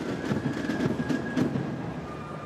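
Boots of a massed detachment of Foot Guards marching in step on the road: a steady rhythm of many footfalls.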